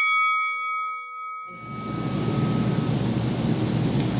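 Ringing tail of a struck bell sound effect fading away over about a second and a half, followed by steady room noise.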